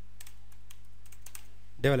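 Computer keyboard being typed on, a quick run of separate keystrokes over a steady low hum.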